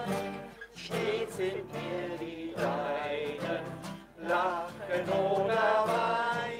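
Two acoustic guitars strummed while a small group of voices sings a hymn together, with short breaks between phrases.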